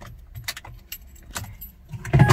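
Car keys jangling and clicking in a series of short, irregular clicks, over a low steady hum.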